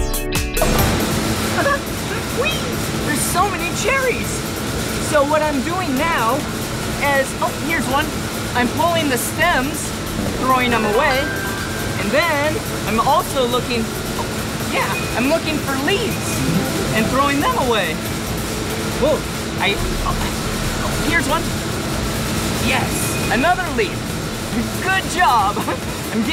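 Packing-plant ambience at a cherry sorting line: a steady hum of conveyor machinery with the indistinct chatter of many workers' voices, and background music underneath.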